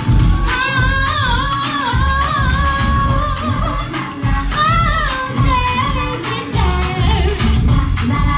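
A woman singing into a microphone over loud backing music with a heavy, pulsing bass beat; her voice holds and bends notes in a wavering melody.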